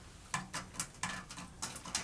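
Hands pressing a self-adhesive LED light strip into place along metal trim: a run of small, quiet clicks and scratches, several a second.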